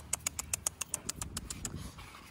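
A pitbull puppy's claws clicking on a ceramic tile floor as she walks: a quick run of about a dozen sharp clicks, roughly seven a second, stopping shortly before the end.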